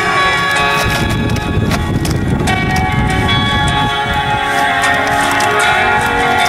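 Instrumental intro of a song's backing track played through a small amplifier, with sustained held notes and a low rumble for a couple of seconds near the start.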